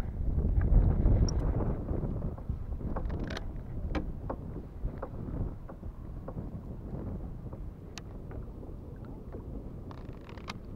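Wind rumbling on the microphone of a kayak out on open water, strongest in the first couple of seconds and then easing off. A few light clicks and knocks sound now and then.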